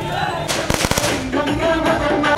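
Firecrackers going off in a quick burst of sharp cracks about half a second in, lasting about half a second, followed by music with singing.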